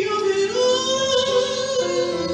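Live female voice singing held notes in operatic style with vibrato, stepping up to a higher note about half a second in and coming back down near the end, with a choir singing behind.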